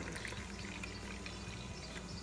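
Milk pouring from a carton into a small ceramic cup, a faint steady pour as the cup fills.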